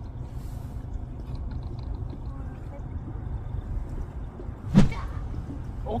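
Steady low rumble aboard a small fishing boat with faint water sounds, then one sharp slap about five seconds in as a hairtail is landed.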